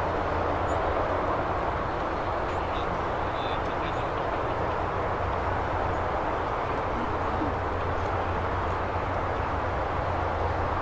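Steady outdoor background noise: a low rumble with a hiss above it, even throughout, and a few faint short high chirps about three to four seconds in.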